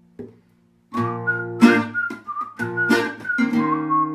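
Acoustic guitar strumming chords with a whistled melody over it, coming in about a second after a brief near-silent pause.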